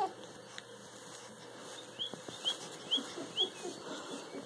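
A bird chirping: four short rising chirps, about two a second, in the second half.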